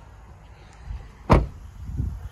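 Rear passenger door of a 2017 Chevrolet Silverado crew cab pickup being shut: a lighter knock, then one sharp, loud slam about a second and a half in.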